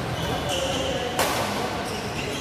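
Badminton rackets striking a shuttlecock in a rally, two sharp hits about half a second and just over a second in, the second the louder, ringing in a large hall.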